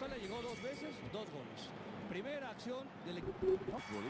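Football TV broadcast sound at low level: a man's commentary voice with faint stadium crowd noise behind it.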